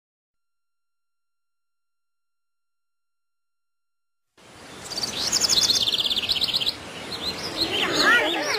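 Silence, then birdsong starts about four and a half seconds in: a fast high trill, then a flurry of short sweeping chirps.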